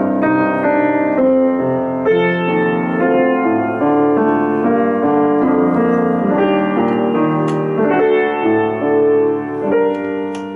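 Grand piano played solo: a melody over held, ringing chords, without pause.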